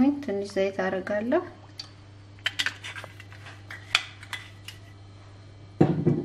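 Cookware clinking and knocking on a stovetop: a few sharp scattered clinks, then a louder knock near the end, over a steady low hum.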